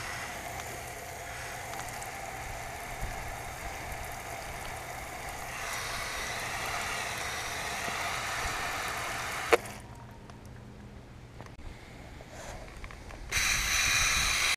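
Water spraying from a pistol-grip garden hose nozzle onto a potted maple and the surrounding leaves: a steady hiss and spatter that grows louder midway. It stops with a click about nine and a half seconds in. A short burst of loud rustling noise comes near the end.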